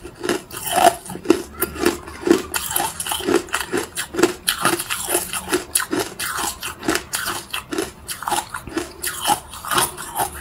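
Hard ice being chewed in the mouth: a steady run of sharp, crackling crunches, about two to three strong bites a second.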